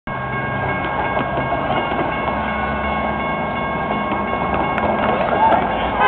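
Railroad grade-crossing warning bell ringing steadily while the crossing gates lower, over the noise of cars driving across the crossing.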